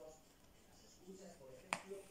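Quiet room with a faint murmur of voice and one sharp, short click about three-quarters of the way through.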